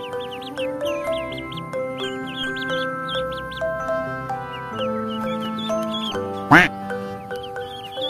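Background music with a steady melody, over which ducklings peep in quick high chirps throughout. One much louder duckling call rings out about six and a half seconds in.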